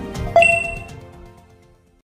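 A bright bell-like ding from an end-logo sound effect, struck about a third of a second in and ringing out as it fades away over about a second and a half, over the tail of background music.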